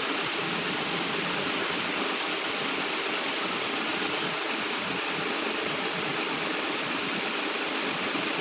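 A steady, even hiss like rushing water or static, with no music or voice in it.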